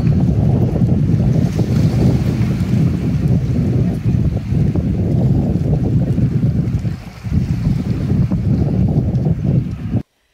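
Wind buffeting an outdoor phone microphone: a loud, gusting rumble, with a short lull about seven seconds in.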